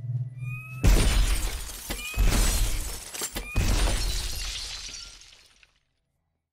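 Large glass panes shattering. A loud crash comes about a second in and two more follow over the next few seconds, then falling glass fades away to silence near the end.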